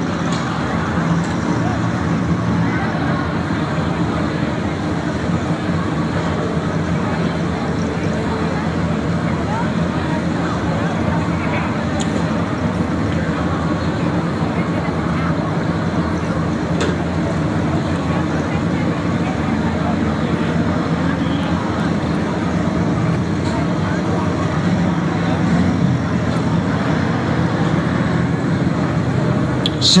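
Ford pickup truck's engine running steadily at high revs under heavy load as it drags a weight-transfer pulling sled.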